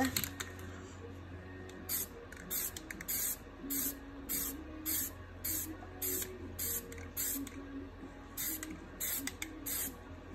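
Rust-Oleum 2X aerosol spray paint can spraying in short pulses. More than a dozen quick hisses come from about two seconds in, roughly two a second, with a brief pause shortly before the end.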